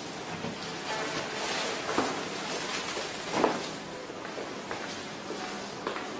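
Soft rustling with two short, light knocks, one about two seconds in and a louder one about three and a half seconds in.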